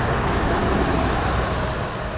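Road traffic passing on the highway: a steady rumble of cars and trucks going by, easing slightly near the end.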